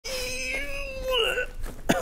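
A man's long, steady vocal strain, held on one pitch and then bending up and down in pitch near the end, as he lifts a heavy parcel.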